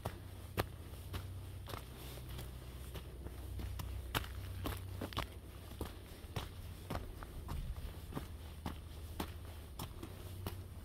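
A hiker's footsteps on a forest trail, one sharp step roughly every half second, with a steady low rumble underneath.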